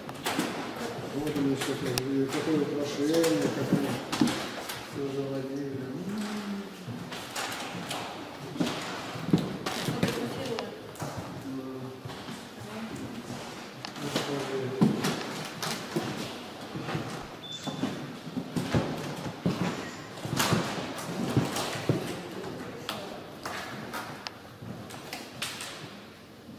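Indistinct talking of visitors in a large hall, with scattered short knocks and thuds.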